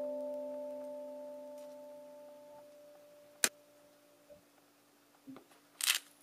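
A sustained keyboard chord of background music dies away over the first three seconds. A single sharp click comes about three and a half seconds in, then a few faint ticks. Near the end there is a short rasp of a hand-held spice grinder being worked over a bowl of fennel seed.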